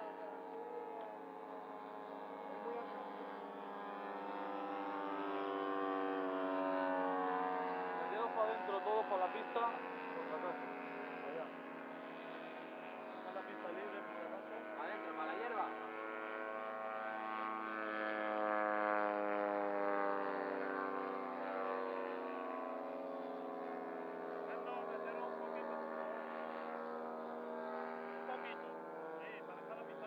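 Several radio-controlled model airplane engines droning together in the air, their pitches drifting up and down as they pass, swelling twice as the formation comes by.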